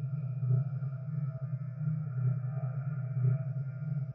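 Instrumental passage of electronic rock music: a loud low drone swelling about every three-quarters of a second, with quieter sustained tones above it and no vocals.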